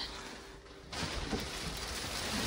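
A steady rushing hiss that starts abruptly about a second in and holds evenly.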